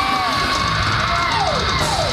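Black metal band playing live at full volume: distorted guitar holding a long note that slides down near the end, with drums underneath and the crowd yelling.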